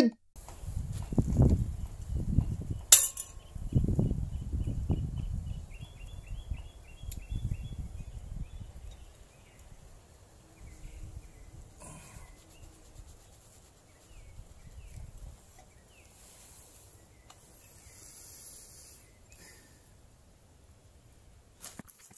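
Hand tools working on a bare engine block: a few sharp metallic clicks over a low rumble that fades out after the first several seconds, with faint high chirps in the background.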